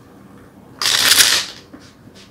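A deck of tarot cards being shuffled in the hands: one quick burst of riffling about a second in, then a few light taps as the deck settles.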